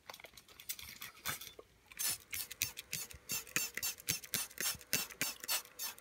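Hand-held trigger spray bottle pumped over and over, a run of short quick squirts that comes thick and fast after about two seconds, misting the substrate of an insect enclosure.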